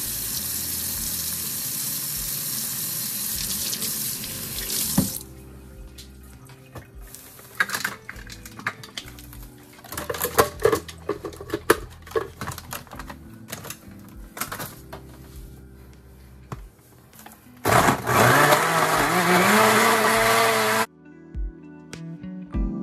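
A kitchen tap runs for about five seconds, then come scattered knocks and clatter of handling. Near the end a Hamilton Beach countertop blender's motor starts, its pitch rising as it spins up, runs for about three seconds blending fruit, and cuts off suddenly.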